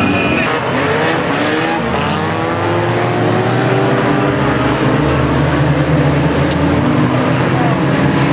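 Engines of a pack of small banger-racing cars revving hard together, several engine notes rising and falling over each other.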